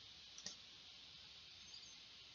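Near silence: faint room tone with a single faint computer-mouse click about half a second in.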